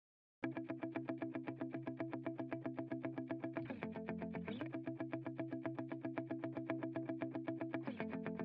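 A brief silence, then a pop song's intro begins: an effects-laden electric guitar picking rapid, evenly repeated notes, with a chord change near the middle.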